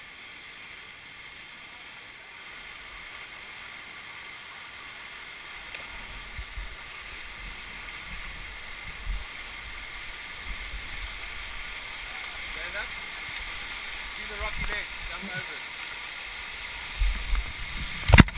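Waterfall rushing steadily into a plunge pool, heard from just above it through a helmet camera, growing slightly louder. Low rumbles of the camera being knocked and brushed come in from partway through, and faint distant shouts near the end.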